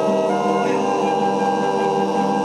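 Altai kai throat singing: a held, steady low voice drone with a thin high whistling overtone entering under a second in, over rhythmic strumming of topshur lutes.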